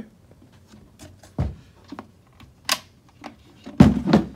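Handling noise from a clear plastic tub and a PVC pipe fitting pushed through its hole: a few scattered plastic knocks and clicks. The loudest knock comes near the end, as the tub is set down on a wooden table.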